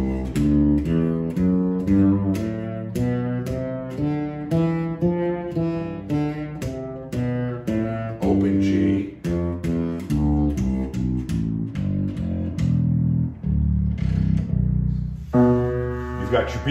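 Fretless six-string electric bass played solo: a melodic line of single plucked notes, several a second, moving up and down through the B Locrian mode. Near the end it gives way to a chord on an upright piano.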